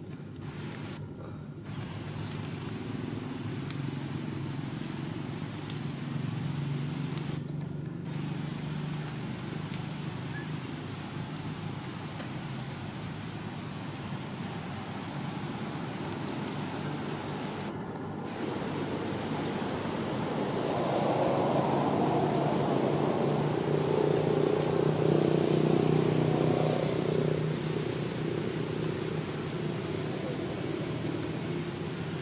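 A motor vehicle's engine running steadily as a low hum outdoors. It grows louder about two-thirds of the way through, then eases off near the end, as a vehicle passing close by would.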